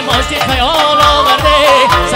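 Male vocalist singing a wavering, ornamented melody into a microphone over band music with a steady drum beat.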